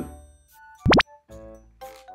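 Light background music that drops out briefly for a short, loud rising "bloop" sound effect about a second in, then resumes.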